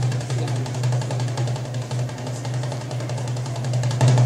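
Egyptian tabla (goblet drum) playing a rapid, even roll over a steady low hum.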